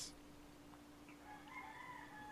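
A faint rooster crowing, starting a little over a second in, over a steady low hum.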